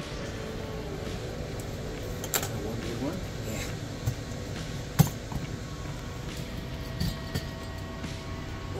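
Aluminium finned heatsink being handled and prised off a Bitcoin miner hashboard on a steel workbench: a few sharp metallic clinks and knocks, the loudest about five seconds in.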